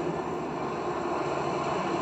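Steady background rumble and hiss with no distinct events: the film's soundtrack ambience in a pause between lines.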